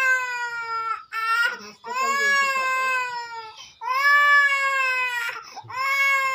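An infant crying: a string of long wails, each sliding slowly down in pitch, broken by short catches of breath.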